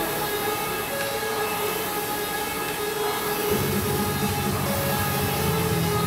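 Air rowing machine's fan flywheel whirring steadily under continuous hard strokes, with background music, whose low end comes in about halfway through.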